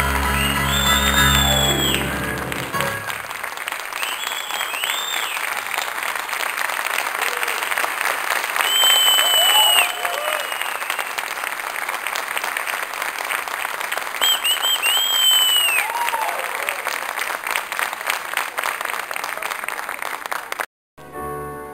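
The last notes of a song on keyboard fade out over the first few seconds as an audience applauds. The clapping then carries on steadily, with several shrill whistles rising and falling above it.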